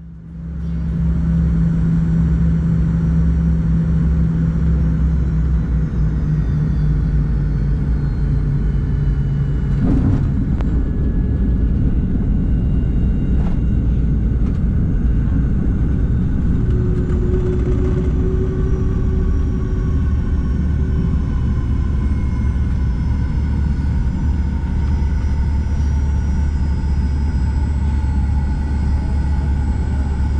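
Jet airliner cabin noise during a Fokker 70's landing: steady engine and airflow rumble on final approach, a thud about ten seconds in at touchdown, then heavier rumble as the jet rolls out on the runway and decelerates. Through the rollout, faint engine tones sink slowly in pitch.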